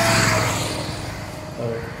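A road vehicle passing close by: its engine and tyre noise is loudest just at the start and fades away over the next second or so, with a faint tone dropping slightly in pitch as it goes.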